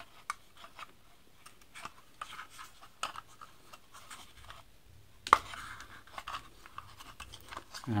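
Plastic switch-and-socket board scraping and clicking against a wooden box as it is seated on it, with one sharp knock a little over five seconds in.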